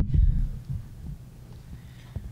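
Low thuds and rumbling handling noise from a tabletop microphone on its stand as it is gripped and slid along a table, loudest in the first half-second, with a few lighter knocks after.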